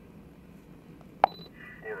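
Scanner radio: a sharp click with a brief high beep about a second in, then a dispatcher's thin, narrow-sounding voice begins near the end.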